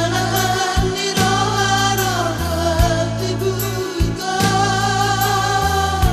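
A Batak pop song: sung vocals with long held, wavering notes over a band accompaniment with a steady bass line and beat.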